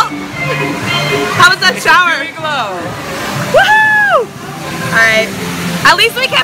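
Theme-park log-flume ride soundtrack music mixed with voices and water sloshing around the log boat. One long voice call rises and falls in the middle.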